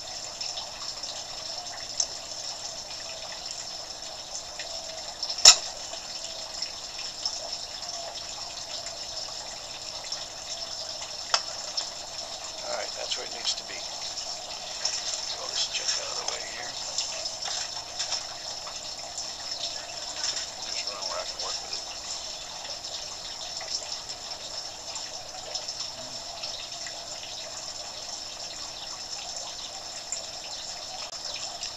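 Steady rushing hiss of a gas flame heating scrap lead until it melts, with a few sharp knocks of metal being handled, the loudest about five seconds in.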